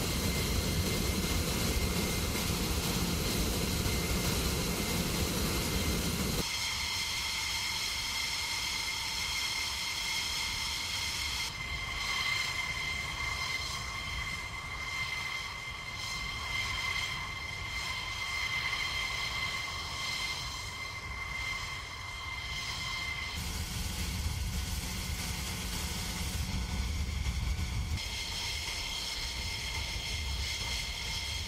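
F-16 jet engines running at idle on the ramp: a steady high turbine whine over a low rumble. The mix changes abruptly several times, the rumble dropping out at about six seconds and returning near the end.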